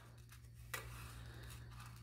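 Faint gritty rustle of fingers kneading damp bee-pollen granules in a plastic dish as water is worked in to make a sticky paste, with a slightly louder scrape a little under a second in, over a low steady hum.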